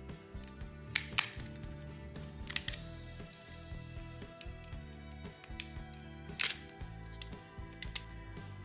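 Sharp plastic clicks, about six of them, as a small flathead screwdriver pries open the snap clips of a Sony remote control's plastic case, over background music.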